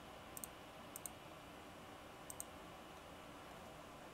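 Computer mouse clicking: three quick pairs of clicks in the first two and a half seconds, over faint steady hiss.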